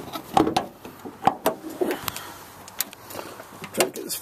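Toyota Sienna hood being released and raised: a string of separate sharp clicks and knocks from the hood latch and hood, mixed with camera handling.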